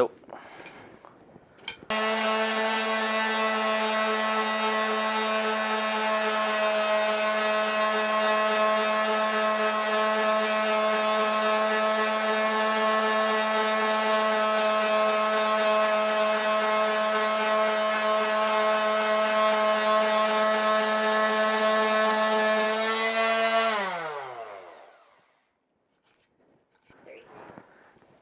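Electric orbital sander switched on about two seconds in, running at a steady pitch while it sands down a plastic retaining part on a range-pole tube. Near the end it is switched off, and its whine falls in pitch as the motor spins down.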